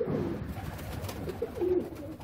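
Domestic pigeons cooing: low, soft coos, with one clearer coo about three-quarters of the way through.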